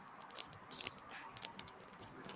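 Faint, irregular clicks of computer keys being tapped, about five or six over two seconds.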